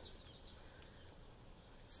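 Faint outdoor background with a few soft, high bird chirps: a quick run of short descending chirps near the start and a fainter one about a second in.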